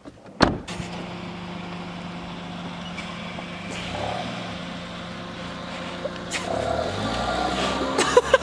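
A car door shuts with a sharp thud about half a second in, then the car's engine runs steadily. Near the end a low rumble grows as the car pulls away.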